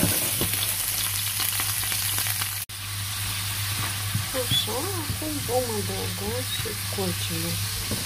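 Small peeled shrimp sizzling and crackling in hot oil in a nonstick frying pan while being stirred with a spatula; the sizzle is steady, with a momentary break about a third of the way in.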